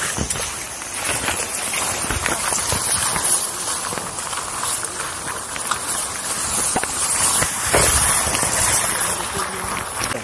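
Wet grass and leafy shrubs rustling and scraping against the camera in many quick brushes as someone pushes along a narrow overgrown trail on foot.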